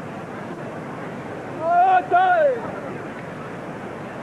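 Steady murmur of a large street crowd, with a man's loud shouted call of two drawn-out syllables about two seconds in: a capataz calling a command to the costaleros beneath the float before it is lifted.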